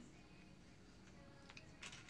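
Near silence: room tone, with a few faint clicks in the second half.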